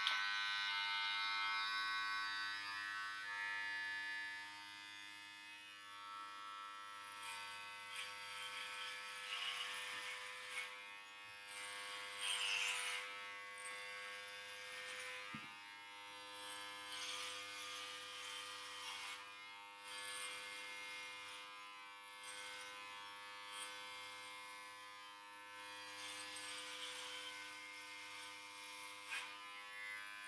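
Electric hair clippers switched on and buzzing steadily as they cut a man's hair very short, with irregular louder rasps as the blades pass through the hair.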